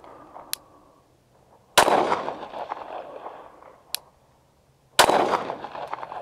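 Two shots from a Glock 19 Gen 3 9mm pistol, about three seconds apart, each echoing away for a second or more after the sharp crack.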